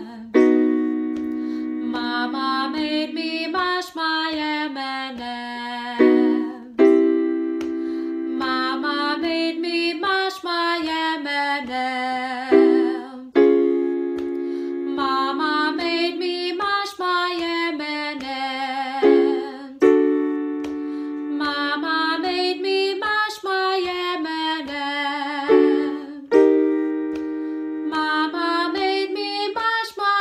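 A woman sings the vocal-exercise phrase 'Mama made me mash my M&Ms' over held keyboard chords. The phrase repeats about every six seconds, moving up in pitch from one repeat to the next as the warm-up climbs the scale.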